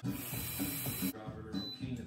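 A steady breath blown into a handheld breathalyzer, a hiss that stops about a second in, over faint background music.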